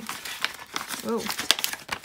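Paper mailer crinkling and rustling as it is worked open by hand and a wrapped card is pulled out, with a run of sharp crackles, the sharpest about one and a half seconds in.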